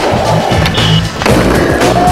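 Skateboard wheels rolling and the board scraping and knocking on a concrete ledge, mixed under loud background music with a steady beat.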